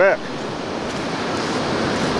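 Pacific Ocean surf washing onto the beach, a steady rushing noise.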